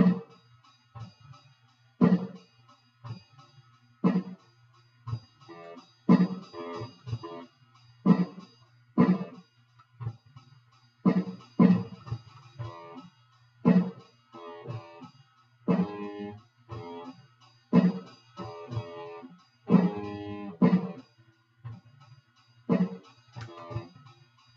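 Electric guitar playing a repeating riff, plucked notes returning at fairly even spacing about every one to two seconds, over a steady low hum.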